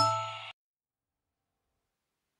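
The last note of a rising chime jingle rings and fades over about half a second, then cuts off abruptly into silence.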